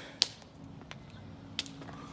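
Three short, sharp clicks about two-thirds of a second apart, the first the loudest, over a faint low hum.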